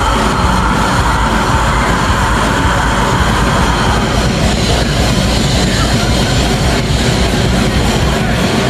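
Rock band playing live at high volume: electric guitars, bass and drums merged into one dense, unbroken wall of sound.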